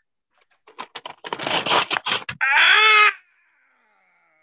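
Comic radio-play sound effects: a rattling, crackling noise for about a second and a half, then a loud, high, wavering whine lasting under a second that trails off faintly.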